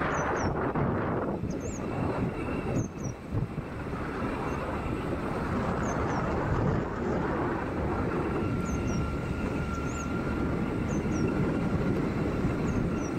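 A moving vehicle's steady road and wind noise, a continuous rumble and hiss, with faint high chirps repeating about once a second above it.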